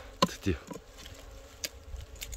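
Wild honeybees from a colony in a tree trunk buzzing close past the microphone, their pitch falling as they fly by. A sharp knock of a hand tool on the trunk's wood comes just before, with a lighter click later.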